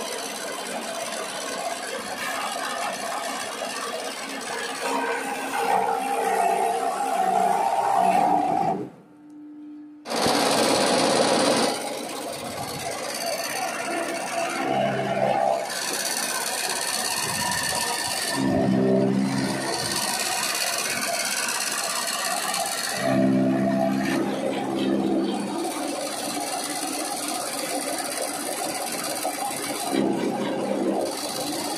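I-Taner chaff cutter running with its blades chopping fodder as stalks are fed in, a steady mechanical clatter with a brief drop-out about nine seconds in.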